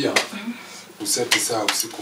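Dishes and cutlery clinking and clattering in several sharp strikes, with a voice talking over them in the second half.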